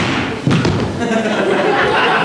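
A performer's body thudding onto the stage floor, with a second hard thump about half a second in, followed by a person's voice.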